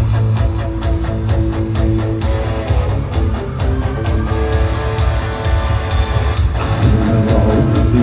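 Gothic rock band playing live at high volume: held electric guitar notes over heavy bass and a steady, even beat.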